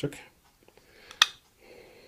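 Real Steel H6 folding knife's blade being swung open, locking with a single sharp click about a second in.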